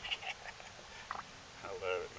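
Brief, indistinct voice sounds over a faint steady hiss, with a longer utterance in the second half.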